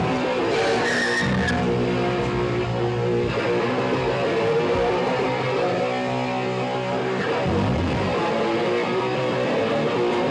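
Live punk band playing, the amplified electric guitar holding sustained, distorted notes with little drumming.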